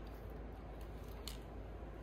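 A single short, sharp click about a second in, over a faint steady low hum.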